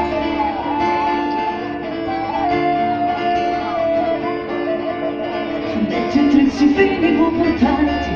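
Live band music with singing, played loud through a stage PA, with a sung melodic line that rises and falls over the accompaniment.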